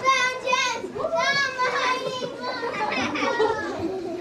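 Children's high-pitched voices calling out loudly in long, drawn-out syllables, one after another.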